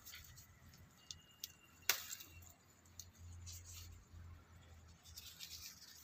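A few faint, sharp clicks and snaps as yardlong bean pods are picked from the vine. The sharpest comes about two seconds in, with a faint low rumble around the middle.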